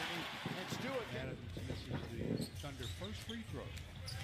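Basketball game broadcast audio: commentators talking over arena crowd noise, with a basketball being dribbled on the court.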